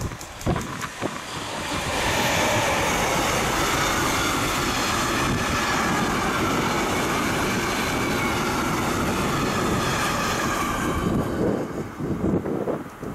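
Class 185 (Bombardier TRAXX) electric locomotive and its short train of container wagons passing close by: a steady rolling rush of wheels on rail that builds over the first two seconds, holds, and falls away near the end as the last wagon goes by.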